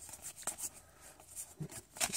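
Pokémon trading cards sliding and rubbing against one another as a hand shuffles them from front to back: a few faint, short rustles.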